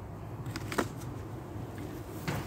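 Faint rustling and handling noise as the camera is carried from one bucket to the next, with a low rumble underneath and one short click a little under a second in.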